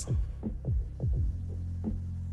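Soft background music: a steady low bass hum with a few short falling notes.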